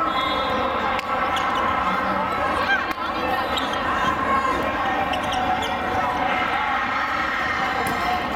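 Volleyball rally in a big, echoing hall: a steady din of many voices from players and spectators, with a few sharp pops of the ball being struck and short shoe squeaks on the court floor.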